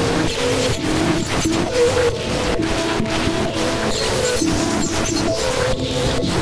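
Harsh experimental electronic music: a dense wall of noise, chopped by frequent brief dropouts, over a synth line of held notes that step between pitches.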